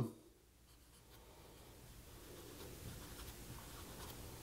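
Dry-erase marker writing on a whiteboard: faint strokes of the felt tip on the board, starting about a second in.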